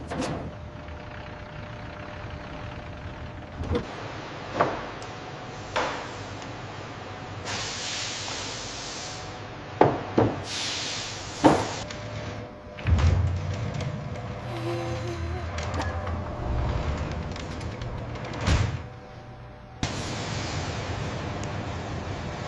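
A run of added sound effects for loading and doors: scattered knocks and thuds, two whooshing hisses, and a low rumble about two-thirds of the way through. Near the end a steady hiss takes over.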